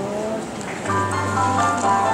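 Mixed choir singing sustained chords, fuller and louder from about a second in as a new chord enters.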